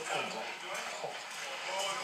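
Speech: a man's voice talking in Dutch.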